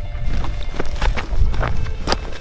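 Several footsteps on a loose rocky trail, over background music and a low rumble.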